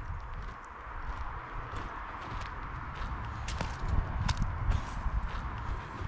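Footsteps crunching on dry dirt and pine needles, with light rustling and scattered small clicks.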